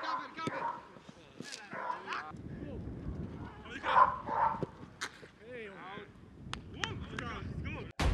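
Footballers shouting short calls during a shooting drill, the loudest shout about four seconds in, with several sharp thuds of a football being kicked.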